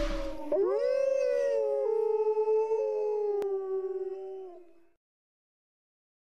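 Wolf howling: one long howl that rises at the start, then holds steady and sinks slightly, ending about five seconds in. The tail of a noisy music effect fades out in the first half second.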